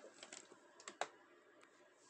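A handful of faint, quick clicks in near silence, the sharpest about a second in.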